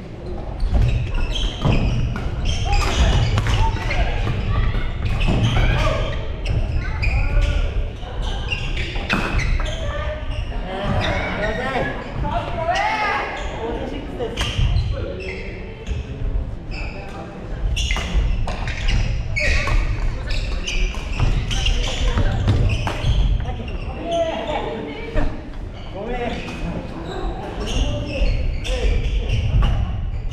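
Badminton rallies in a large, echoing gym hall: repeated sharp hits of rackets on shuttlecocks and footfalls on the wooden floor, with people talking throughout.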